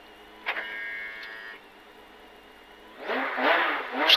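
Porsche 911 GT3 (997) rally car's flat-six idling, heard from inside the cabin, with a click and a brief high tone about half a second in. In the last second the engine revs up hard for the launch from the stage start.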